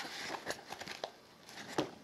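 Faint handling noise: soft rustling and a few light clicks from hands working a small nylon belt pouch.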